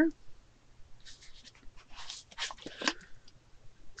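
Plastic handling noise from a hair-oil applicator bottle with a comb tip as its pink cap is twisted off: a run of short, soft scrapes and rustles.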